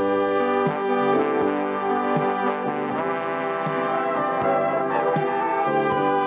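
Three trumpets playing a tune together in harmony, with held notes changing every half second or so.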